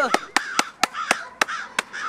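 A man laughing, punctuated by about seven sharp claps of his rubber-gloved hands, roughly three to four a second.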